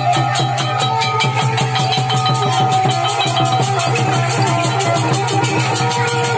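Traditional Khmer dance music accompanying a yeak masked dance: a fast, steady run of percussion strikes under a sustained melodic line.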